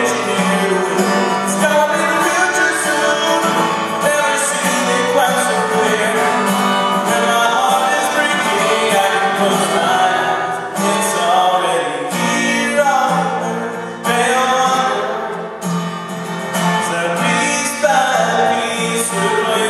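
Live song performance: an acoustic guitar strummed with a man singing over it.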